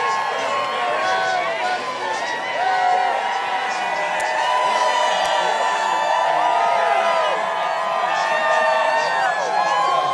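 A large crowd of baseball fans cheering and whooping, many voices yelling at once in a steady din.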